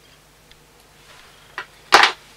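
Small handling clicks from fly-tying work at the vise: a faint tick, a light click, then one loud, sharp click near the end.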